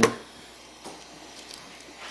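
Quiet bench handling while soldering a wire to a connector terminal: a few faint light ticks from solder wire and parts being handled, over a low steady hiss.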